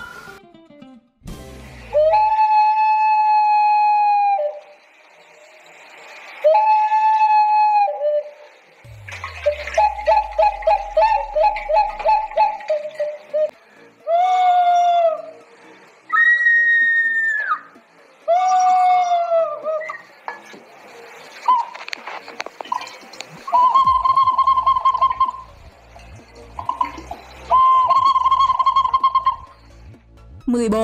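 Peruvian clay whistling vessels (double-chambered water whistles with bird figures) sounding a string of animal-like whistled notes, each one to two seconds long, some held steady, some warbling, and one sliding up to a higher pitch.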